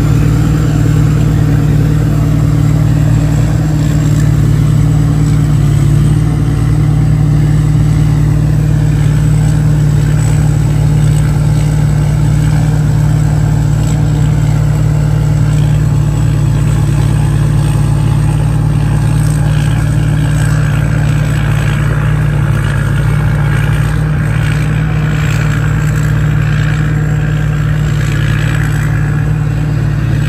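Diesel engine of a 270 hp P. Charoen Phatthana rice combine harvester running steadily under load while it harvests in deep mud, with a thin high whine held above it.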